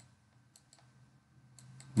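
A few faint, short clicks from the input device used to handwrite on a digital whiteboard, most of them near the end, over a low steady hum.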